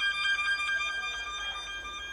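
Background music: a violin holding high sustained notes with a rapid, even pulsing.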